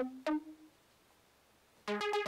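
Korg iPolysix synthesizer app playing a quick run of short synth notes that stops about half a second in. Over a second of near silence follows, then the notes start again just before the end.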